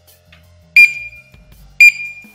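Two short, loud high-pitched beeps about a second apart, each ringing briefly: a barcode scanner signalling that a tyre marking code has been read and confirmed. Faint background music underneath.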